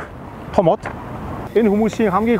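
A voice narrating in Mongolian, with a short pause in the middle where a steady background hiss is heard.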